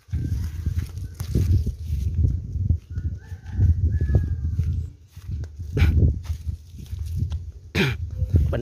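Uneven low rumbling of wind and handling noise on a phone's microphone as it is carried through leafy bushes, with leaves brushing it. Two sharp snaps come near the end, about two seconds apart.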